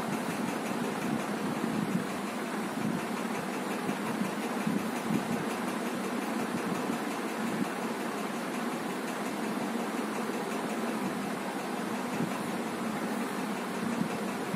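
A steady mechanical hum and whir that runs evenly without speech.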